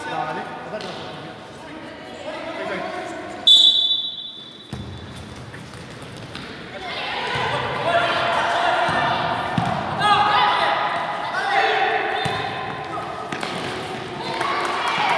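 A referee's whistle gives one short, sharp blast about three and a half seconds in. From about seven seconds on, voices shout over the thuds of the futsal ball being kicked and bouncing on the court.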